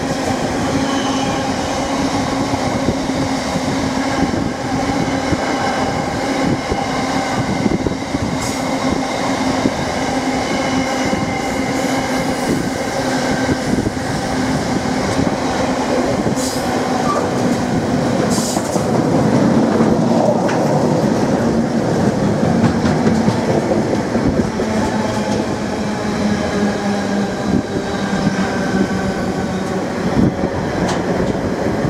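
Intermodal freight train's container flat wagons rolling past at speed: steady heavy wheel-on-rail rumble with occasional sharp clicks.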